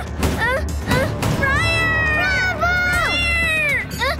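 A cartoon bear's high-pitched wordless cries: a few short rising yelps, then long wavering wails, over a steady low rumble of underscore music.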